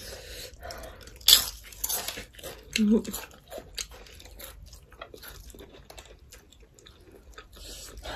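Eating noises close to the microphone: chewing, biting and lip smacking as the women eat rice and fried pork, with many small wet clicks and a louder crunch or slurp about a second in. A brief hummed 'mm' comes near the three-second mark.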